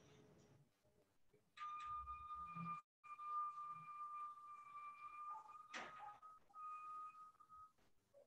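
A steady high tone sounds from about a second and a half in for about six seconds, broken by two short gaps, with a single sharp click near the middle.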